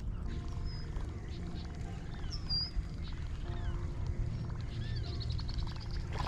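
Wind rumbling on an open action-camera microphone, with faint bird calls chirping over it now and then and a few faint held tones.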